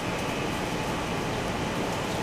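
Steady, even background hum of machine-like noise with no distinct events.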